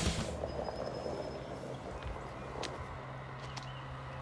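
Quiet outdoor background with a low steady hum and a few scattered light ticks, after rock music cuts off right at the start.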